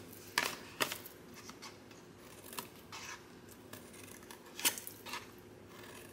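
Small craft scissors snipping through cardstock: a handful of short, crisp snips spread out, as the corners are trimmed off the tabs of a folded box template.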